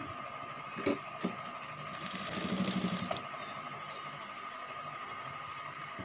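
Industrial sewing machine stitching a short seam through satin fabric, running for about a second about two seconds in, with a couple of light clicks before it and a steady high hum throughout.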